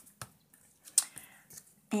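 A few light clicks and taps from small craft tools and cut-paper pieces being handled on a tabletop. The sharpest click comes about a second in.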